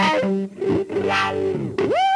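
Electric guitar played fast: a run of quick, stepped notes that breaks off about half a second in, then lower held notes, and a sharp upward pitch glide near the end.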